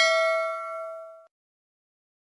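Notification-bell ding sound effect: one bell tone with several bright overtones, ringing on and fading away a little over a second in.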